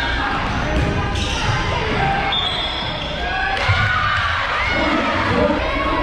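A volleyball bounced several times on the hardwood floor of a large gymnasium, over crowd chatter and voices.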